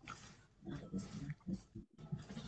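A man's voice, faint and broken into short soft fragments with gaps between them, as over an online video call.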